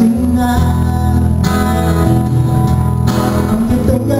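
A man singing a pop ballad in Spanish into a microphone while strumming an acoustic guitar, performed live.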